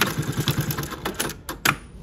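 Juki LU-2860-7 double-needle walking-foot industrial lockstitch machine sewing through denim at a rapid, even stitch rate. It stops about a second and a half in with a few sharp mechanical clicks.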